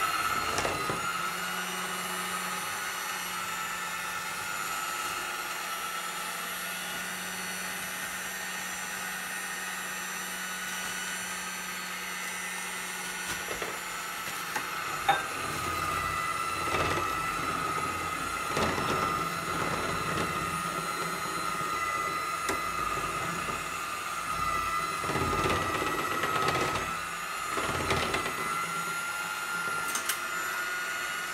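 Electric hand mixer running steadily with a constant whine while beating wet batter. In the second half, soft irregular thumps sound about every second or two, fitting a flour sieve being tapped over a bowl.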